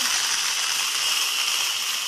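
Foam gun spraying a steady stream of soapy water against a pickup truck's cab and windows: an even hiss of spray.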